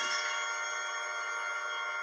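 A held, unchanging shrill chord from a horror film's score: many steady tones sounding together with no rhythm or break.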